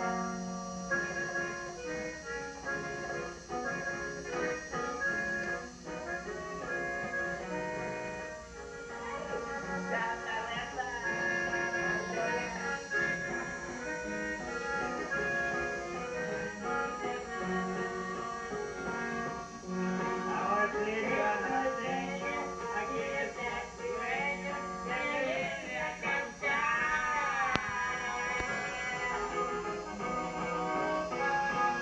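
Norteño music played on a button accordion, with bajo sexto strumming and a steady bass pulse; a wavering voice-like line joins in the second half.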